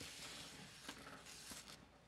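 Faint rustling of a cloth towel patting blanched green beans dry on a metal sheet pan, with a couple of light clicks.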